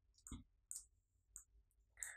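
Near silence with three faint, short clicks of a computer mouse.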